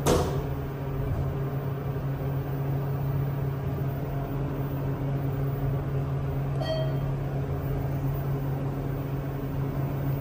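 TK Endura hydraulic elevator car travelling up, with a steady low hum of the car in motion and its pump throughout and a short thump right at the start.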